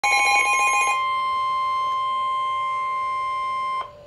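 Weather alert radios sounding the NOAA Weather Radio warning alarm tone, a single steady high tone that signals a warning-level alert is about to be read. For about the first second a second, fast-pulsing beep sounds over it. The tone cuts off abruptly just before four seconds in.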